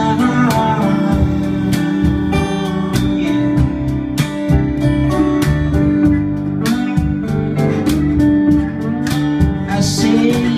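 Live band instrumental passage: acoustic guitar strummed in a steady rhythm with a lap slide guitar playing over it.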